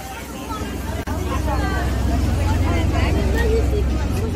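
Busy street ambience: a low, steady engine rumble from passing traffic swells loudly about a second in and holds, with passers-by talking over it.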